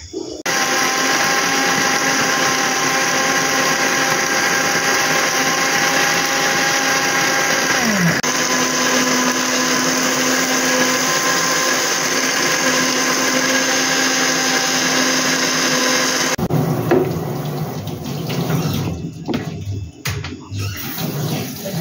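Electric countertop blender running steadily, puréeing a thick orange mixture. Its motor pitch dips briefly about eight seconds in and then settles. It cuts off suddenly about sixteen seconds in.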